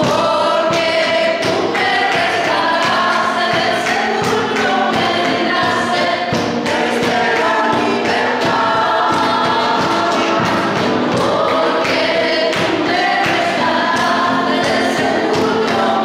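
A group of voices singing a slow worship song with instrumental accompaniment, continuous and steady in level.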